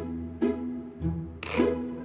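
Background drama score on strings: low cello and double-bass notes start about twice a second, with higher string notes over them.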